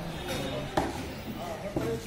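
Voices talking in the background, with two sharp knocks about a second apart.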